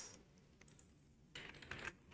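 A few faint computer keyboard keystrokes, most of them in the second half.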